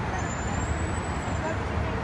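Steady city road traffic: a continuous low rumble of passing cars.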